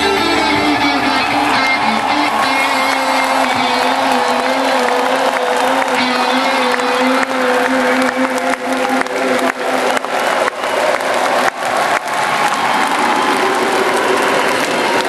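A rock band's final chord on electric guitars ringing out and fading over the first half, while a large crowd applauds and cheers; the applause takes over in the second half.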